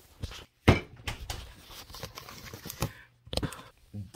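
Knocks and light clicking clatter of household items being handled on a kitchen counter, with one sharp knock under a second in and a short cluster of clicks near the end.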